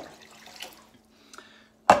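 Water poured from a jug into a pot of hot caramelised honey, a faint trickling splash with a few small ticks. Near the end comes one sharp, loud knock.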